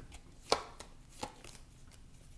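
A deck of tarot cards being shuffled by hand, the cards giving a few short sharp slaps, the loudest about half a second in and another a little past a second.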